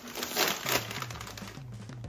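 A potato chip bag being torn open and crinkled, with a burst of tearing and crackling plastic about half a second in.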